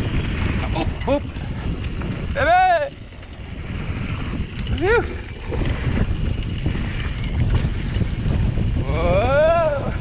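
Wind buffeting the microphone and a steady rumble of mountain bike tyres rolling over a dry dirt singletrack. Short rising-and-falling 'oop' and 'woo' calls from the rider break in about a second in, at about two and a half seconds, at five seconds and near the end.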